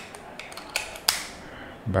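Plastic clicks and handling of a handheld digital psychrometer as a 9-volt battery is seated in its battery compartment: a few sharp clicks, the loudest a little past the middle.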